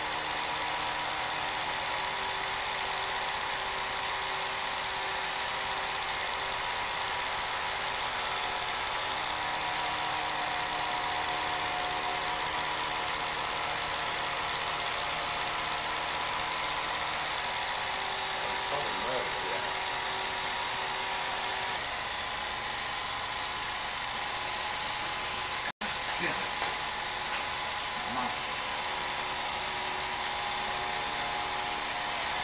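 Film projector running with a steady mechanical whir and rattle. The sound cuts out for an instant about four seconds before the end.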